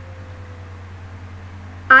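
Steady low background hum with a faint, slowly falling tone in a pause between spoken quiz answers; a voice starts again at the very end.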